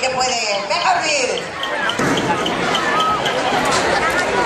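Crowd of spectators calling and shouting, with a few dull thumps.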